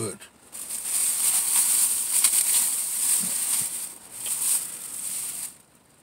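Plastic shopping bag crinkling and rustling as it is rummaged through, a dense crackly rustle that stops suddenly about five and a half seconds in.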